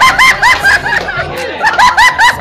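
Loud, high-pitched laughter in quick repeated bursts, about five a second: one run in the first second, then a short pause, and a second run near the end.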